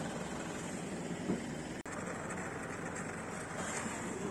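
Faint, steady running noise of the aerial lift truck's engine, with a brief dropout about two seconds in.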